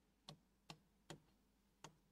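Four faint, light ticks of a stylus tapping the screen of an interactive whiteboard as a formula is written on it.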